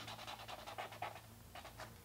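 Thick felt-tip marker scribbling on paper in quick back-and-forth strokes, filling in a black hexagon. Faint, with the strokes stopping near the end.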